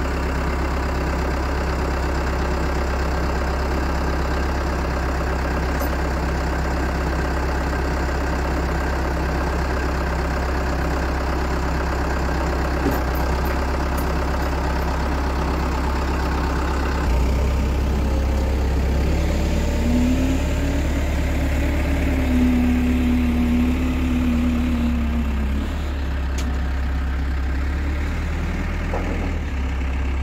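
JLG telehandler's diesel engine running steadily at idle. About two-thirds of the way through the sound changes, and for a few seconds a whine rises, holds and then falls away.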